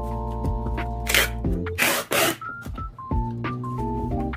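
Background music with held notes. About one and two seconds in come two short rasping bursts as clear packing tape is pulled off the roll and laid across the seam of a cardboard box.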